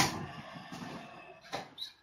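A sharp knock right at the start, followed by a noisy rustle that fades over about a second and a half, then two short clicks near the end.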